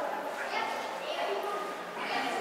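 Indistinct voices of people talking, in short broken phrases.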